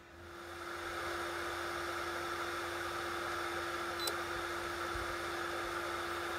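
Plug-in Handy Heater's small fan blowing steadily with a light hum, with a short beep about four seconds in. After switch-off the heater keeps its fan running to blow the stored heat out before it shuts itself off.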